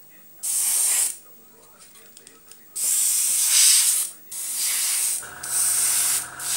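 Airbrush spraying paint in four short hissing bursts with quiet gaps between them, the trigger pressed and released as the model tank's turret is painted. A steady electric hum, the airbrush compressor's motor, starts up about five seconds in and keeps running under the last burst.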